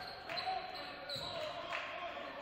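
A basketball dribbled on a hardwood gym floor during play, a few bounces, with players calling out over it.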